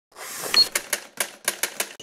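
Logo-intro sound effect: a rising whoosh, then a quick, uneven run of about seven sharp clicks.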